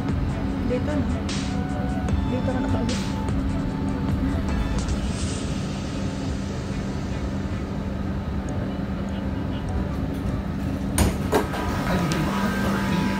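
Inside a Doha Metro train carriage: a steady low hum and running noise, mixed with music and voices. The sound changes abruptly about a second before the end.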